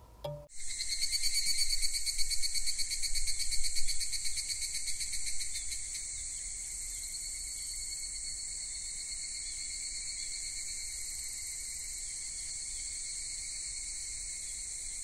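Crickets chirring: a high, fast-pulsing trill that sets in about half a second in, louder and uneven for the first few seconds, then steady.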